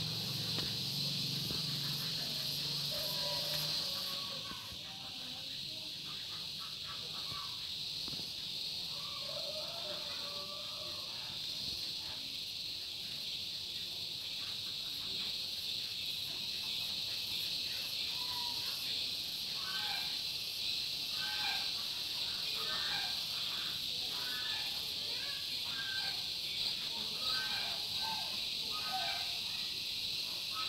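Outdoor ambience: a steady high-pitched insect chorus with scattered short bird chirps, which come more often in the second half. A low hum, like a distant engine, fades out about four seconds in.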